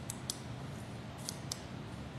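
Four light clicks in two pairs about a second apart, over a steady low room hum.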